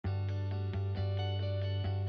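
Intro music: a run of notes, a new one every quarter to half second, over a steady low held tone.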